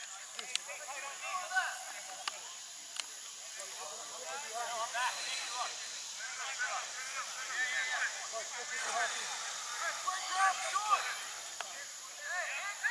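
Distant, overlapping shouts and calls of rugby players and sideline spectators across an open field, growing busier from about a third of the way in, with a few sharp knocks in the first three seconds.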